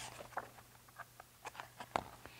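Faint small clicks and paper rustles from a large hardcover picture book being turned around and its pages flipped, with a sharper tap just before the end.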